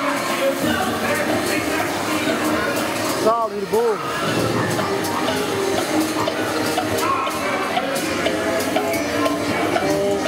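Dark-ride soundtrack playing through the ride's speakers: continuous orchestral music mixed with character voices, with a brief burst of swooping, rising-and-falling pitched sounds a little past three seconds in.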